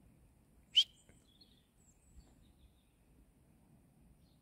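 A single short, sharp, high chirp of a small bird about a second in, followed by a fainter chirp, over a quiet low background rumble.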